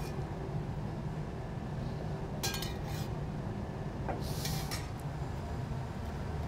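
A few faint clinks of kitchen utensils and dishes, about two and a half, three and four and a half seconds in, over a steady low background hum.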